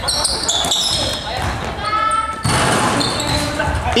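Basketball game on a wooden gym floor: the ball bouncing, sneakers squeaking in short high chirps, and players running, all echoing in a large hall.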